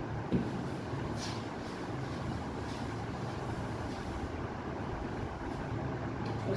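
A whiteboard duster wiping across the board, heard as a few faint swishes over a steady low hum of the room.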